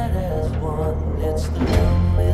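Trailer score music: a repeating figure of short notes over a sustained low bass, with a rising swish and a swell in the bass near the end.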